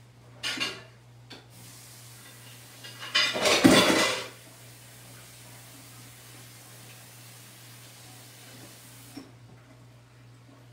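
Tap water running into a sink as a paintbrush is washed: it starts about a second and a half in and stops near the end, with a loud clatter in the sink about three seconds in.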